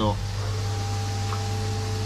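Steady electrical hum of koi pond filtration equipment, with a higher steady whine joining about half a second in as a unit is switched on.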